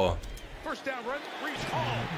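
Quieter speech in short phrases, a man's play-by-play commentary from the football broadcast, well below the level of the talk either side.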